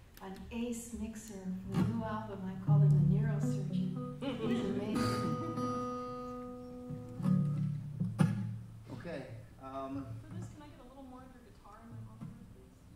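A man's voice at the microphone over a few plucked acoustic guitar notes, with one steady note held for a few seconds in the middle.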